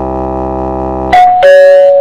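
Channel intro music: a steady synthesized chord. About a second in, a two-note chime falls in pitch over it, with a click and a brief hiss.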